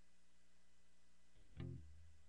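Near silence with a faint low hum, then about one and a half seconds in an electric bass guitar's strings sound briefly, a single low note that quickly fades, as the bass is taken off its wall hanger.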